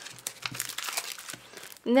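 Clear plastic sleeve of sticker sheets crinkling as it is handled, a run of short, irregular crackles; a voice starts to speak near the end.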